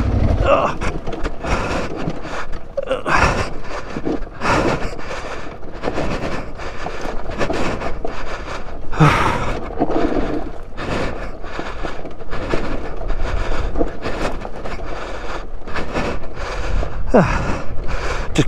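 Aprilia Tuareg 660 adventure motorcycle freewheeling downhill with its engine off, its tyres crunching over loose rock and gravel, with irregular knocks and rattles from the bike.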